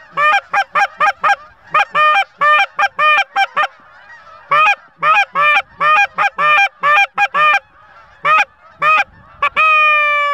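Geese honking and clucking, loud, in rapid short honks about three a second, pausing briefly a few seconds in and again near the end, then a longer drawn-out honk.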